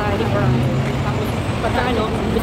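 Women talking at a table, with a low rumble of road traffic underneath that swells briefly near the start.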